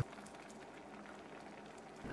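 Pot of Thai chicken curry broth simmering on the stove, a faint steady bubbling.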